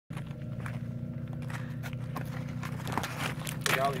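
Shoes scuffing and loose rock clicking and knocking as a person climbs down a rocky cliff face, over a steady low hum. A man starts talking near the end.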